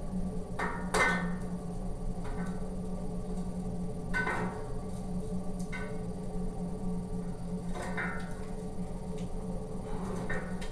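Metal tongs clinking against the metal feed opening of a rocket heater as sticks and burning paper are pushed in: about six sharp, ringing clinks spread over the seconds, over a steady low hum.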